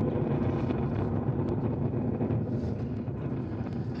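Ariane 5 ES rocket's launch noise during its climb, a steady low rumble from the two solid rocket boosters and the core stage firing about half a minute after liftoff.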